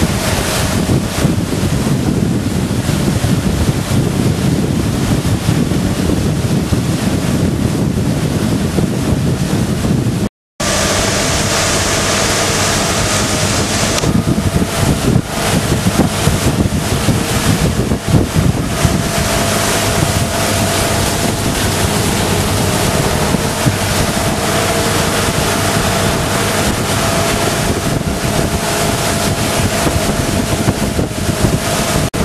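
Motorboat engine running steadily under way, with wind buffeting the microphone and water rushing past the hull. The sound cuts out for a moment about ten seconds in.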